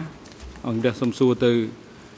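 Speech only: a man's voice saying a few short syllables, starting about half a second in and stopping shortly before the end.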